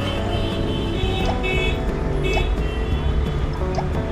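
Nokia 105 ringtone melody playing through the phone's small loudspeaker. The speaker works properly after the repair.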